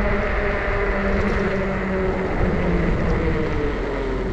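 Fat-tire electric bike under way: the motor's steady whine mixed with rushing tire and wind noise on wet pavement.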